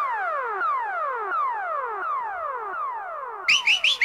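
Electronic music effect: a synthesized tone falling in pitch from high to low, over and over, about every two-thirds of a second. Near the end a few short rising chirps come in, leading into rock music.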